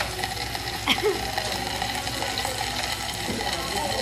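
Pork sizzling on a grill pan over a portable gas stove as it is turned with tongs, a steady hiss under faint restaurant chatter.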